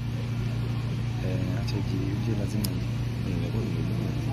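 A steady low hum, with faint voices in the background.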